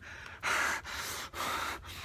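A man breathing hard and shakily close to the microphone, two loud breaths about half a second and a second and a half in: acted frightened breathing.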